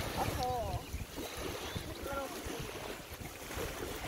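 Gusty wind buffeting the microphone as an uneven low rumble, with a child's brief vocal sounds about half a second in and again about two seconds in.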